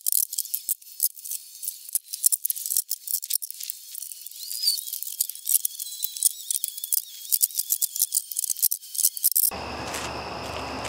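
Fast-forwarded, high-pitched audio of a cordless drill backing screws out of a plywood trailer floor: a dense run of rapid clicks and brief whirring spurts.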